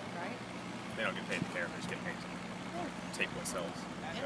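Faint, indistinct voices of people talking at a distance, over a steady low hum.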